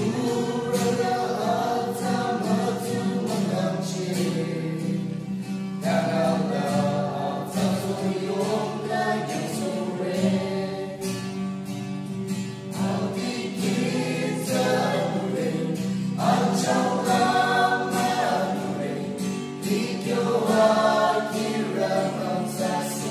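A small mixed group of men and women singing a gospel song together, accompanied by a strummed acoustic guitar.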